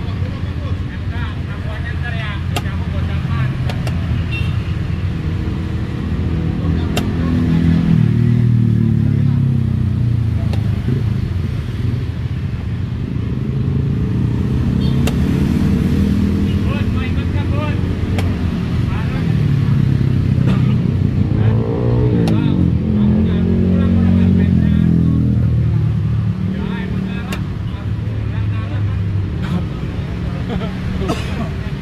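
Motor vehicle engines running nearby, swelling louder several times as vehicles pass, with one rising rev a little past the middle. A few sharp clicks sound over it.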